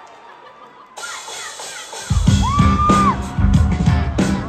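A live rock band kicks back in loud about two seconds in, with drums, bass and electric guitar, starting the song over after a broken snare drum. Before that the hall is fairly quiet, with crowd noise and high shouts.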